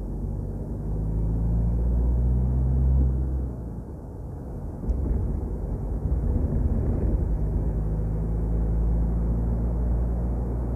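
A car driving at speed, heard from inside the cabin: a steady low drone of engine and road rumble. It eases off briefly a few seconds in, then comes back up sharply about five seconds in.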